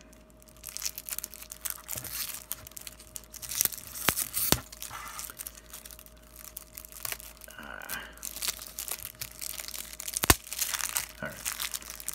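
Clear plastic shrink-wrap being picked at, torn and peeled off a deck of trading cards: continuous crinkling and crackling with scattered sharp clicks, two standing out about four and a half and ten seconds in. The thin wrap is tough and slow to tear.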